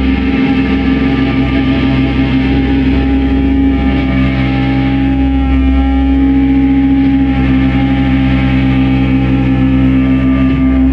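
Live rock band music led by an electric guitar holding a sustained, droning chord over a steady low bass, with no clear drumbeat.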